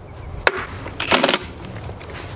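Hammer tapping on steel transmission parts: one sharp metallic strike about half a second in, then a quick run of ringing metal clinks about a second in.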